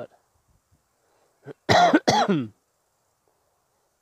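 A man coughing, a short double cough about halfway through, with near silence around it.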